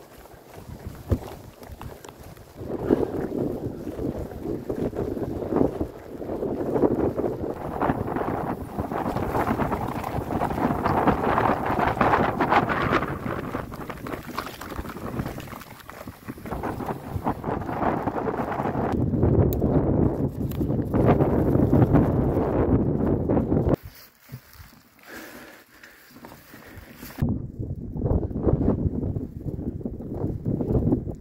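Wind rushing over the microphone as a mountain bike rides a rough gravel road, mixed with the rumble of its tyres on loose stones. The noise rises and falls, drops away sharply for a few seconds about four-fifths of the way through, then builds again near the end.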